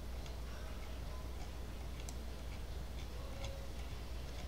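Faint, irregular clicking, about two short ticks a second, over a steady low electrical hum.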